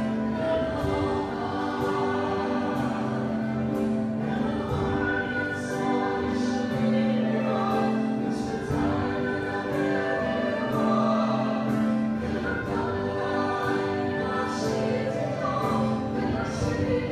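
A group of voices singing a slow, hymn-like melody together in long held notes.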